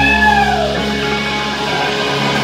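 Live band's electric guitar and bass playing, opening with one high note that slides up and then falls away over about a second, over held low notes.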